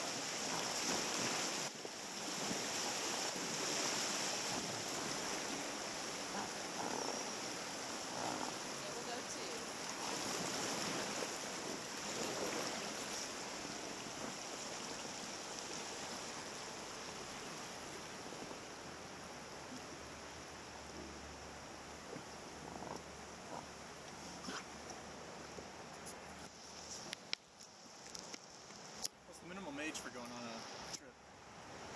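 Rushing river white water, a steady noise that slowly fades as the raft drifts from the rapids into calmer water. Near the end come a few sharp knocks from the camera being handled.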